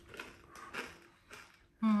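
A few short rustles and knocks of takeout food packaging, paper wrapping and a container, being handled on a table.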